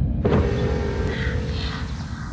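New York subway car: a steady electric whine over a hiss, setting in a moment after the start and fading near the end, with a low rumble underneath.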